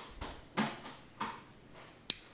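Faint handling noise of a steel-handled automatic folding knife turned over in the hands: a few soft taps and rubs of metal against fingers.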